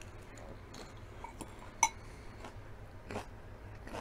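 A person chewing a mouthful of lettuce salad, with faint mouth clicks, and a single sharp clink of a metal fork on a bowl about two seconds in.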